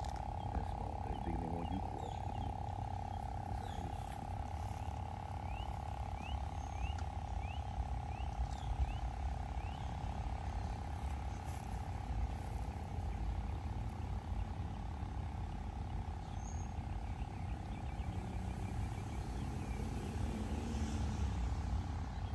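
Lakeside ambience: a steady mid-pitched drone with low wind rumble on the microphone. About a quarter of the way in there is a run of about eight short, high, rising chirps, roughly two a second.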